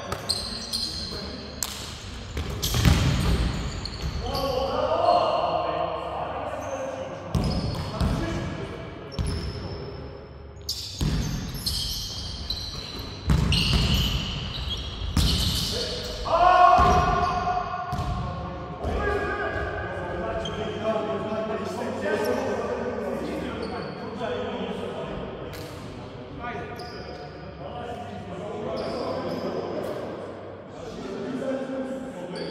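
Basketball bouncing and thudding on a hardwood gym floor during a game, with repeated sharp impacts, amid players' voices and the echo of a large sports hall.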